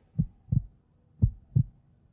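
Heartbeat suspense sound effect: low double thumps, lub-dub, one pair about every second, twice.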